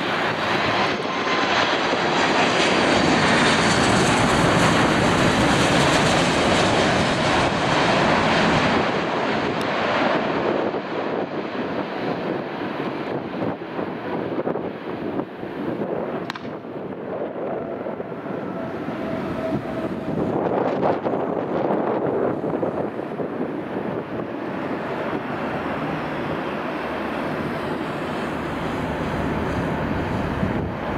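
Boeing 737 MAX's CFM LEAP-1B jet engines on landing approach, the jet noise swelling to its loudest and highest over the first several seconds as the aircraft passes, then dying down. A steadier, lower engine noise carries on through touchdown and the rollout.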